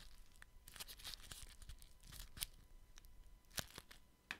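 Soft, irregular crinkling and crackling of a small piece of crinkly material worked between the fingertips close to the microphone, with two sharper crackles in the second half.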